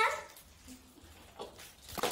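A drawn-out, high-pitched vocal call cutting off at the start, then a quiet room with a faint knock about a second and a half in and another near the end.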